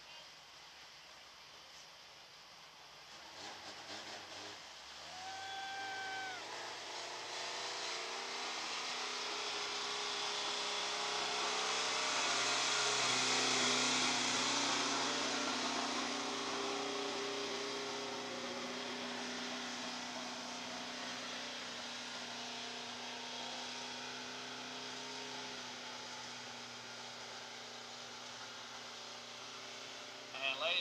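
A mini stock race car's engine running as it laps the dirt oval, growing louder to a peak about halfway through as it passes and then slowly fading.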